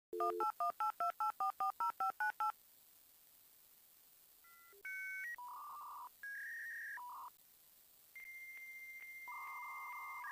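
Dial-up modem connecting sound: a quick run of about a dozen touch-tone dialing beeps, then a pause and a string of steady handshake tones. A high held tone with a regular ticking in it starts about eight seconds in, joined by a lower tone near the end.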